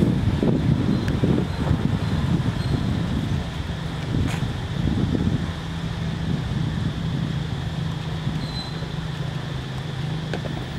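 Wind rumbling on the microphone, strongest in the first few seconds, with a low steady hum that sets in about three and a half seconds in.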